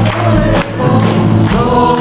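Church choir singing a gospel song with instrumental accompaniment, over a steady low bass note.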